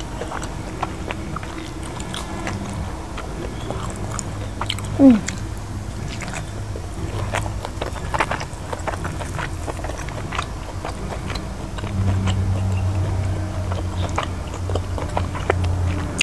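Close-miked mouth chewing sticky rice and curried vegetables by hand, with many small wet clicks and smacks. A short vocal "eh" comes about five seconds in. A steady low hum grows louder from about twelve seconds on.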